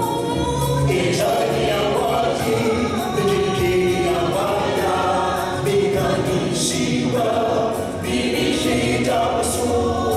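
Mixed vocal ensemble of women and men singing a gospel song in close harmony into microphones, with long held chords.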